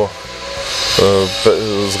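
A man's voice speaking briefly, over a steady background hiss that swells through the first second.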